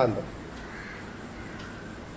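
A man's voice trails off at the very start, then a pause of low room tone with a faint bird call in the background, crow-like.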